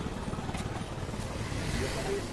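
A steady low engine rumble with a fast, even pulse, from an engine running nearby.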